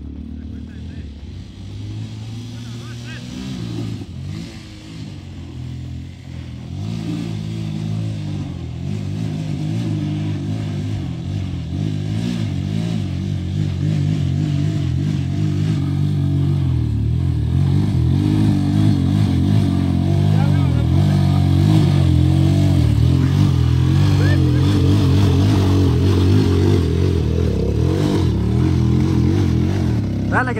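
Dirt bike engine running hard under load, its pitch wavering as the rider works the throttle to climb a steep, loose dirt slope. It gets steadily louder as the bike comes closer.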